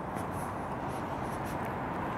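Steady low rumble and hiss of a slowly moving car, with faint light ticks.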